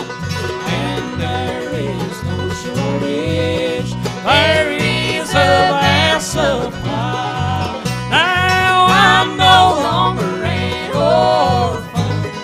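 Live bluegrass gospel band playing: banjo, mandolin, acoustic guitar and electric bass over a steady bass line of about two notes a second, with voices singing in harmony, louder from about four seconds in.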